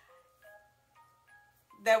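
Faint background music: a few soft, bell-like sustained notes entering one after another at different pitches.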